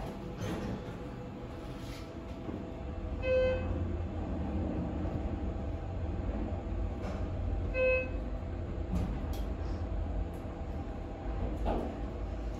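Schindler 330A hydraulic elevator car descending: a steady low rumble with weird shaft noises, and two short electronic chimes about four and a half seconds apart as it passes floors.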